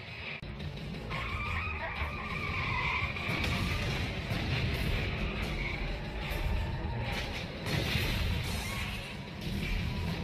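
Car-chase sound: car engines running hard and tires squealing, with a wavering squeal in the first few seconds, over background music.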